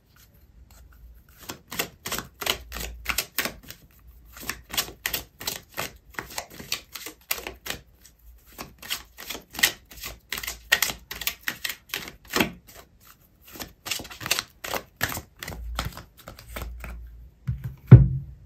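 Oracle card deck shuffled by hand: a steady run of card clicks, about four a second, broken by short pauses, ending with one sharp knock.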